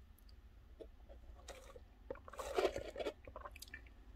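Close-up mouth sounds of a person sipping a drink through a straw and swallowing: faint wet clicks, busiest about two and a half seconds in.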